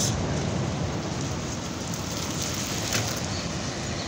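Steady outdoor background noise: an even rushing hiss with no distinct events, with a faint tick about three seconds in.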